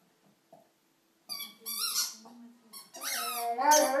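Rhodesian Ridgeback whining in high, squeaky tones about a second in, then breaking into a howl that glides in pitch near the end.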